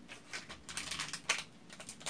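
Thin plastic wrapper crinkling in the hands, a quick irregular run of sharp crackles, as black modelling clay is worked out of its packet.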